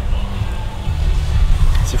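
Steady low rumble of wind buffeting an outdoor microphone, with a spoken word starting near the end.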